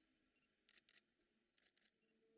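Near silence, broken by two faint pairs of short clicks, one pair about two-thirds of a second in and another near the end.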